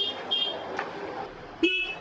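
A high-pitched vehicle horn sounding in short blasts over street noise, with the last blast about half a second in. A brief voice comes near the end.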